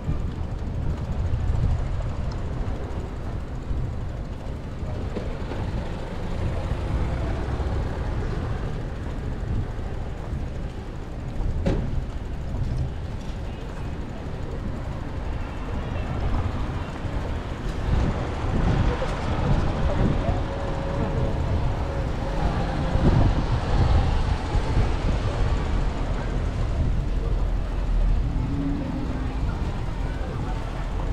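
Wind rumbling on the microphone of a moving bike, mixed with road traffic noise; the rumble grows louder in the second half.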